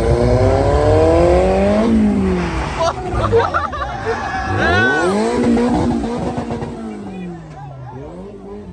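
Car engine revving hard as a car accelerates past, its note climbing for about two seconds and then dropping as it goes by, followed by more rising and falling revs, with a crowd shouting over it.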